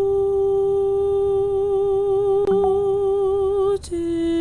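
Solo viola holding one long bowed note with a vibrato that widens as it goes on. The note breaks off shortly before the end and a new, slightly lower note begins.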